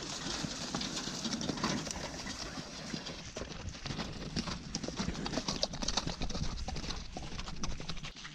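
Horses' hooves clip-clopping at a walk on a sandy, gravelly dirt track: a run of short, uneven knocks.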